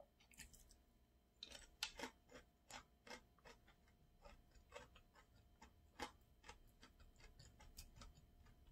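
Faint, irregular wet clicks and smacks of a person chewing food with the mouth closed, a few per second, loudest about two seconds in.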